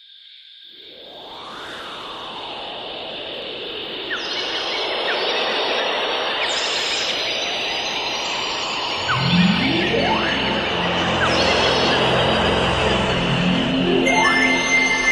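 Instrumental music fading in from silence, with bird-like chirps and a high steady tone over a rising and falling swell; deeper sustained notes join about nine seconds in.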